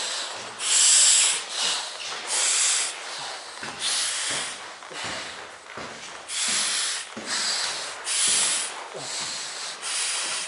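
Heavy, laboured breathing drawn in and out through the valves of an altitude training mask during a loaded stair climb. It comes as noisy, hissing breaths, a loud one about every second and a half with softer ones between: the breathing of someone exhausted by the effort.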